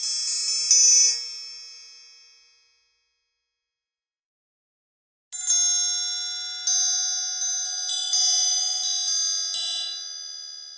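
Sampled orchestral triangle played back from a virtual-instrument library. A few quick strikes in the first second ring out over about two seconds; after a pause, a run of about seven strikes from about five seconds in, each with a long, bright ringing decay.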